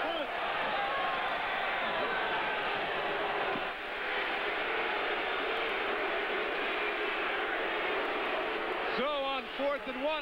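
Steady stadium crowd noise, many voices blended into one even din. A man's voice comes through clearly near the end.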